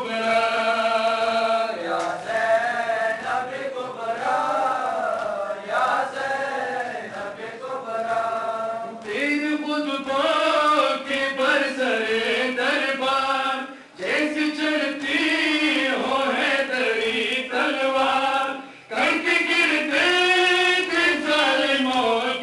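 Men's voices chanting a noha, a Shia mourning lament, line by line, with rhythmic chest-beating (matam) keeping time. The chant breaks off briefly twice, about two-thirds of the way in and again near the end.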